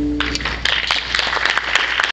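The last chord of an acoustic guitar rings briefly and stops, and audience applause breaks out a fraction of a second in, a dense clatter of many hands clapping.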